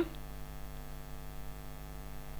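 Steady electrical mains hum, low and even, with no other sound over it.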